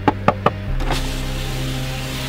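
A few sharp knocks on car window glass in the first half second. Then a car's electric power window runs down with a steady motor hiss. Background music plays under both.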